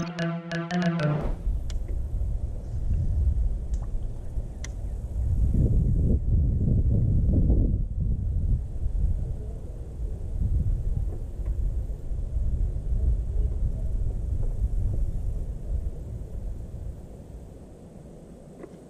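A short music sting ends about a second in. It is followed by a low, uneven rumble of wind buffeting the microphone, heaviest in the middle and dying down near the end.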